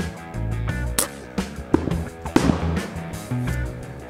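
Background music with a steady beat. About two and a half seconds in comes a sharp bang, an Umarex Big Blast cap target going off when a pellet hits it.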